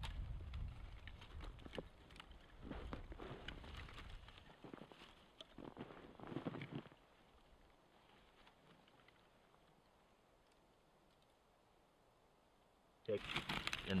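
Wind buffeting the microphone, with small crackles and rustles from a smouldering bundle of dry twig tinder as it catches and is handled. The sound cuts out to silence about seven seconds in.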